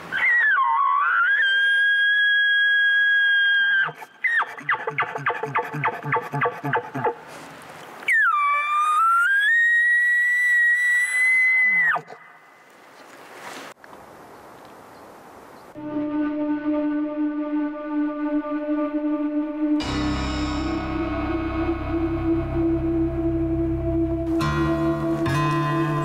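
Two elk bugles. Each is a high whistle that swoops down and then up before holding steady for three to four seconds and cutting off, and the first is followed by a run of quick, low chuckles. About four seconds after the second bugle, background music with sustained tones comes in.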